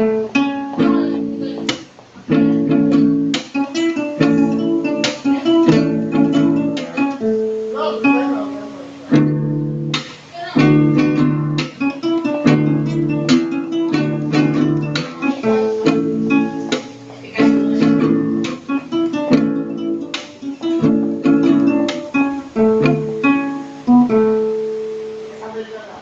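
Two acoustic guitars, one a nylon-string classical guitar, strummed together through a steady chord progression.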